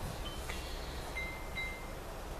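A few faint, high, clear notes at different pitches, held briefly, over a low steady background rumble.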